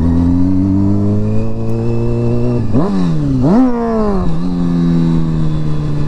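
Honda CBR sportbike engine pulling steadily at low revs, given two quick blips of the throttle, each a sharp rise and fall in pitch, about three seconds in. It then settles back to a steady, slowly falling tone.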